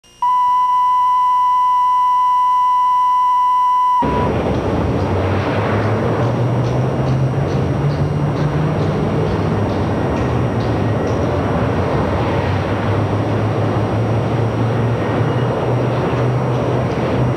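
A steady 1 kHz test tone, the kind that accompanies video colour bars, cutting off sharply about four seconds in. Then a dense, noisy droning texture with low notes that shift in pitch: the opening of a lo-fi experimental instrumental.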